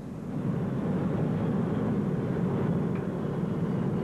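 Steady, even rushing drone of an airplane in flight, with no distinct engine tone or separate events.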